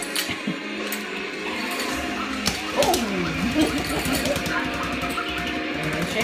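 A noise-making toy is going, with steady tones and a cartoon-like pitch glide that falls and rises again a little before the middle. A fast rattle of clicks runs under it.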